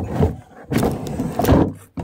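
Coffee mugs and their gift-box packaging being handled: a run of rustles and light knocks, loudest about one and a half seconds in.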